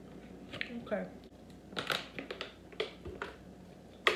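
A woman's voice saying "okay", followed by a few short, quiet clicks.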